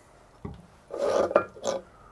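A light knock, then two short scraping rubs: a porcelain evaporating dish being shifted on the metal top of a laboratory hotplate.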